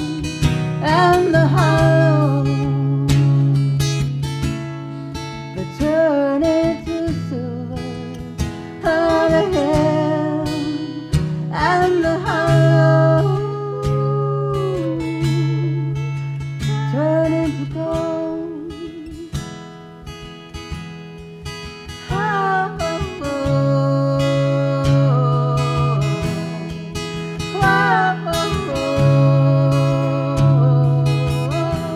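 Live acoustic song: a woman singing a slow, sustained melody with vibrato while strumming an acoustic guitar, with a second woman's voice singing along.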